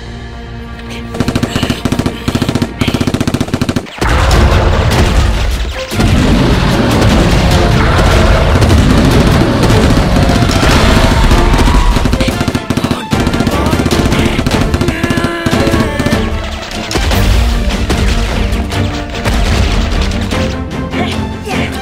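Rapid automatic gunfire sound effects over dramatic action music: short bursts at first, then almost continuous and louder from about four seconds in, with a couple of brief breaks.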